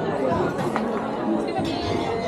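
Chatter of many diners talking at once in a busy restaurant dining room, over background music.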